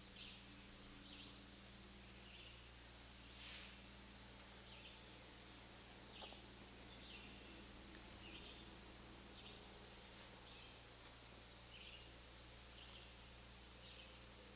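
Nearly silent room tone with a low, steady hum, over which a bird chirps faintly, one short high note every half-second to a second. A soft rustle comes about three and a half seconds in.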